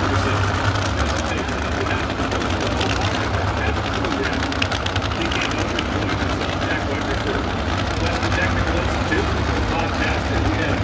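Nitro-burning supercharged Funny Car V8s idling with a steady low rumble as the cars back up after their burnouts, with crowd voices over it.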